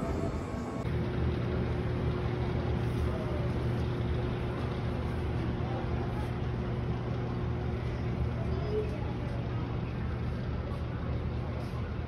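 A steady low hum runs throughout, with faint music playing in the background.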